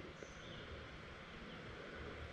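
Faint outdoor background: a low, steady hiss, with a brief faint high tone near the start.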